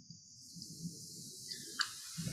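Open phone line on a video call, just unmuted: a steady high hiss over faint low background noise, with a sharp click near the end.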